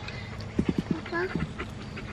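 A dog makes a quick run of four short, low sounds about half a second in, followed by a few brief voice sounds.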